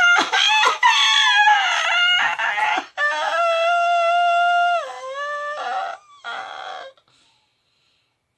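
A woman's loud, high-pitched vocal cry: about three seconds of wavering calling, then a long held note that drops in pitch near the end, and one short final cry.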